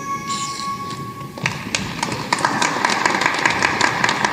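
The last held notes of the program music ring out and stop about a third of the way in, then audience applause starts, a patter of many hand claps that thickens into steady clapping.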